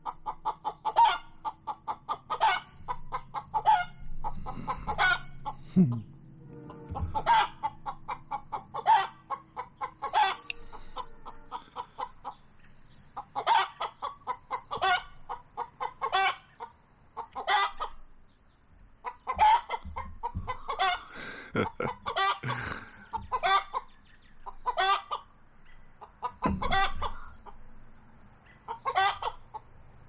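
Chickens clucking noisily in a long run of short, repeated calls, about one a second, with a denser stretch of calling a little past two-thirds of the way through.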